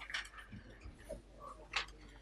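A few scattered clicks and taps from a laptop being worked, the sharpest near the end, over a steady low room hum.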